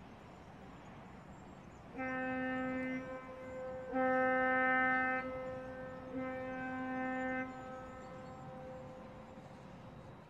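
A demolition site's blasting signal horn sounds three long, steady blasts of about a second each, two seconds apart. The last blast rings on in a fading echo for a second or so.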